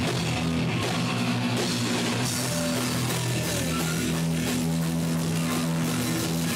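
Loud heavy punk rock played on distorted electric guitar and drum kit, the guitar holding long droning chords over steady drumming.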